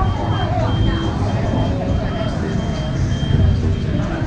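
A vehicle's reversing alarm gives a steady string of high beeps over the low rumble of running engines and people talking.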